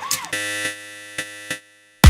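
Psytrance break: a sustained, buzzing synth chord with a few sharp percussive hits, then the music cuts out to a moment of silence.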